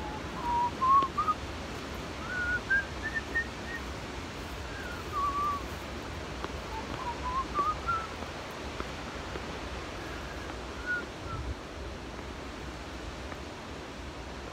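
A person whistling a wandering tune in short phrases with pauses between them, over a steady low rumble of wind on the microphone.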